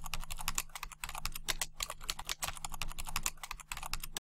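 Typing sound effect: a fast, uneven run of key clicks over a faint low hum, laid under text being typed out on screen.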